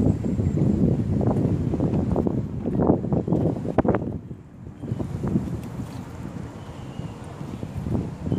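Gusty wind buffeting a phone's microphone, with rough irregular rumbling that eases off a little past halfway.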